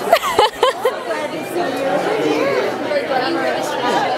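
Speech only: several overlapping voices chattering in a large, busy room, with one clearer voice in the first second.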